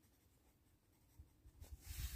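Pen writing on a workbook page: after about a second of near silence, faint scratching of the pen tip on paper, building up toward the end.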